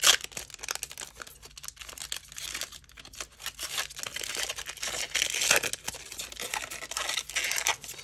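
A foil-lined trading-card pack being torn open and crinkled by hand: a sharp rip right at the start, then continuous irregular crinkling of the wrapper as it is pulled apart.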